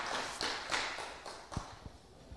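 Faint scattered taps that fade away, then a couple of brief low thumps near the end.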